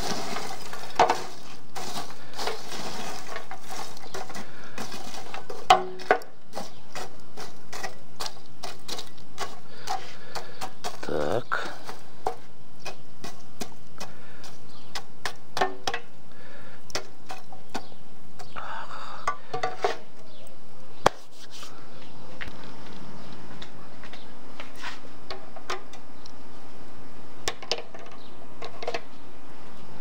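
Metal rod stirring and spreading charcoal in a steel mangal: coals clinking and the rod scraping and knocking against the grill in irregular clicks, with two louder knocks about six and twenty-one seconds in. The clicks thin out in the second half. The embers are being levelled for grilling.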